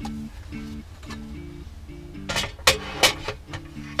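Background music: a plucked guitar melody plays steadily. A few sharp knocks of objects being handled and set down come a little past the middle.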